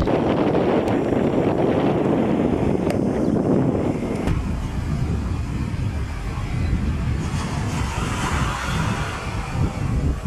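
Wind buffeting the camera microphone outdoors, a dense low rumble with no clear pitch. The sound changes abruptly about four seconds in, where the shot changes.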